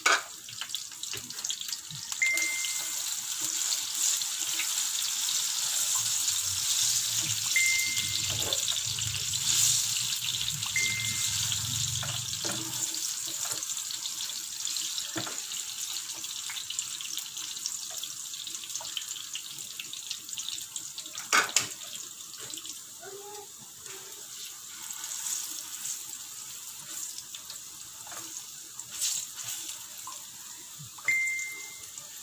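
Banana slices sizzling as they fry in a small pan, a steady hiss that is strongest in the first half and eases later. A couple of sharp knocks, about a third of the way in and again later, as the slices are turned with a spatula.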